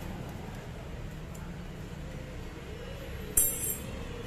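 A single sharp metallic clink with a brief bright ring, about three and a half seconds in, over a steady low background hum.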